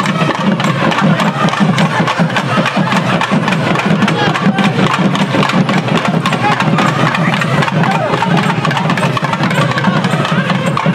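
Loud, unbroken procession din: rapid, continuous hand drumming with many crowd voices over it.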